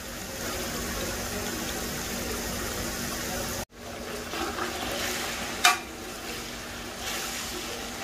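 Chicken frying in oil in a large metal pot, sizzling steadily while a long ladle stirs it. The sound cuts out suddenly for a moment a little before the middle, and a single sharp knock comes later, near the three-quarter mark.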